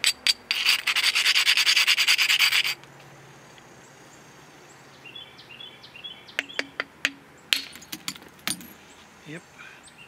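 Stone abrader rubbed fast along the edge of a flint biface to grind a striking platform: a loud run of rapid scratchy strokes lasting about two seconds, then it stops. Later come several sharp clicks as the copper-capped billet is set against the edge, with a bird chirping in short repeated calls.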